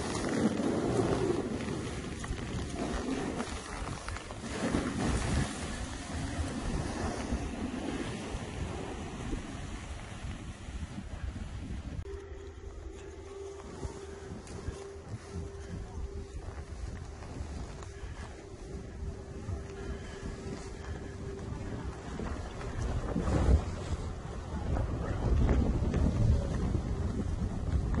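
Wind rushing over the microphone of a camera carried by a skier moving downhill, with skis sliding on packed snow underneath; the rushing swells in gusts near the start and again near the end.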